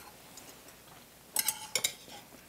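Metal chopsticks tapping against a brass bowl: a few quick clicks about one and a half seconds in, one with a short ring.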